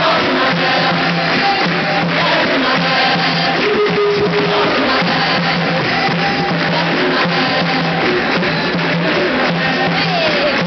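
Live capoeira roda music: berimbaus played with hand percussion, and the circle singing along.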